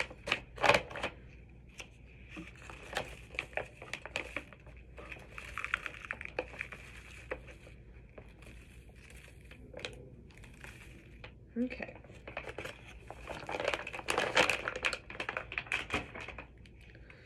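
Baking soda being poured from its package into a measuring cup: crinkling and rustling of the packaging with scattered light taps, growing louder and busier near the end.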